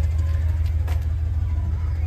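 Steady low hum of a 2008 Chrysler Town & Country minivan's V6 engine idling, with a faint click about a second in.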